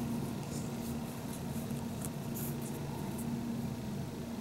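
Quiet room tone with a steady low hum, and a few soft clicks and rubs from fingers handling a plastic pig figurine.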